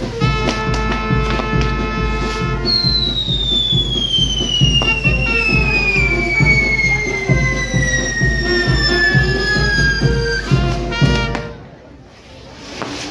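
Brass band music over a burning fireworks castle, with a low pulse about three times a second. From about three seconds in, a single firework whistle falls steadily in pitch for about eight seconds. The sound drops away suddenly near the end.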